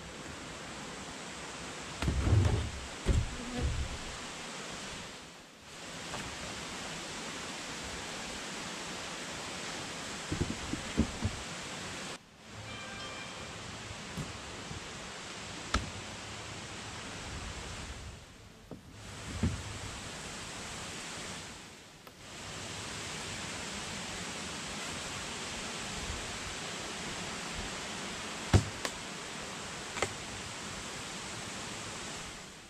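A steady, even hiss with a few low knocks and thumps of wooden beehive boxes and lids being handled, the loudest cluster a couple of seconds in and a sharp knock near the end.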